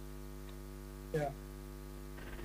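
Steady electrical mains hum in the audio feed, a low even buzz that never changes, with one short spoken "yeah" a little after a second in.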